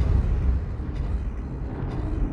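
Deep, steady low rumble of a dramatic sound bed: the tail of a heavy boom dying away into a continuous rumble.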